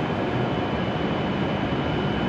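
Steady hum and hiss of a stopped E7 series Shinkansen at the platform, with a faint high-pitched whine held steady throughout.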